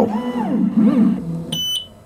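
Stepper motors of an xTool S1 laser engraver's gantry moving the laser head in quick framing moves, a whine that rises and falls in pitch with each move as the head speeds up and slows down, several times over. About one and a half seconds in, a short high electronic beep sounds.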